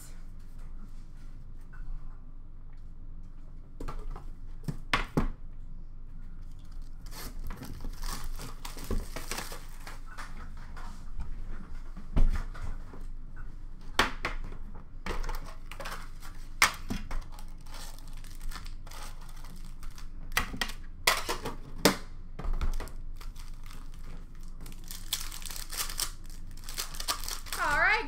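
Trading-card pack wrappers crinkling and tearing as they are handled, in irregular bursts of rustle with sharp clicks, busiest near the end.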